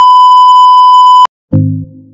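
Colour-bar test tone: a loud, steady electronic beep at one pitch, lasting just over a second and cutting off suddenly. After a brief silence, a keyboard chord of music begins.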